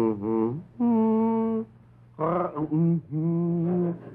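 A man humming a slow lullaby tune in long held notes with short breaks between them. The tune drops lower in the second half.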